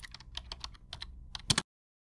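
Computer keyboard typing sound effect: quick, irregular key clicks, about seven a second, with the loudest pair of clicks just before the sound cuts off about a second and a half in.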